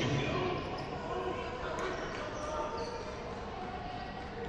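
Basketball bouncing on a hardwood court, with indistinct voices of players and spectators echoing around a gymnasium.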